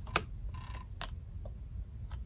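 Tarot cards being handled by hand: two light clicks about a second apart.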